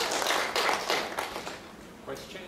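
Audience applause, the clapping thinning and dying away through the second half.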